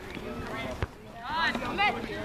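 Players shouting loudly on a soccer field, with one sharp thump of the ball being struck a little under a second in.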